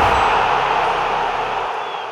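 Sound effect of a logo animation: a loud hiss of static-like noise that slowly fades away, with a low bass rumble beneath it that drops out near the end.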